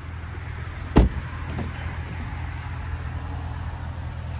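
A car's rear door latch clicking open with a single sharp thump about a second in, over a steady low hum.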